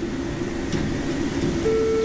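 Steady noise of a fast-food kitchen's fry station, with a low hum. Near the end a steady electronic beep starts and holds: a fry timer going off.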